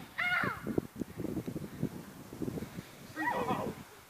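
Two short, high-pitched vocal cries from people play-wrestling: one near the start, falling in pitch, and another about three seconds in. Between them comes irregular scuffling on grass.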